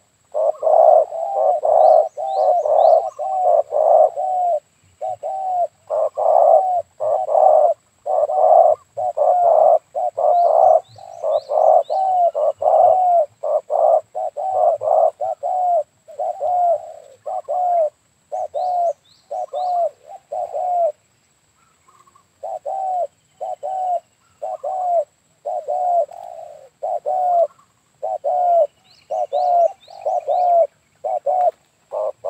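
Spotted doves cooing close by: a long run of short, low coos, about two or three a second, with brief pauses. A few times a small bird adds quick, thin high chirps in threes.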